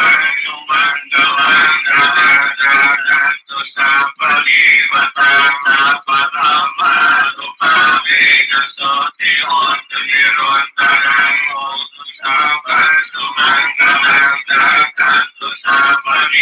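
A voice singing to music, with quick phrases running throughout.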